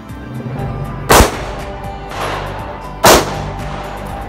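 Two loud pistol shots about two seconds apart, over background music.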